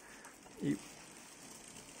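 Near silence with one short spoken word about half a second in.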